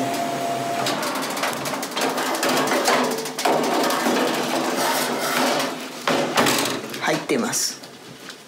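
Rinnai gas convection oven opened mid-preheat at 280°C: its fan and burner rush loudly while a hot metal baking tray inside is handled with many clicks and knocks. The sound drops off sharply near the end as the door shuts.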